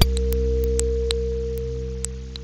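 Electronic music: a single steady pure tone held over a low drone that slowly fades. Short high pings and ticks are scattered through it, a few each second.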